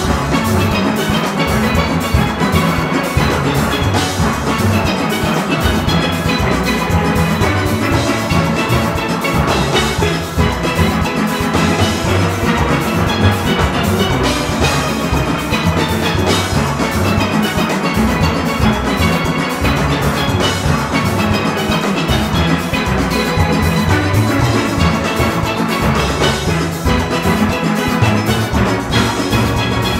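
A large steel orchestra playing a fast, tempo-paced Panorama arrangement on many steel pans at once, over a strong, evenly pulsing bass and drums.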